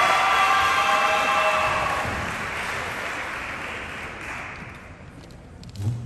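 Audience applauding with a few cheering voices, loudest at the start and dying away over about four seconds. A short thump comes near the end.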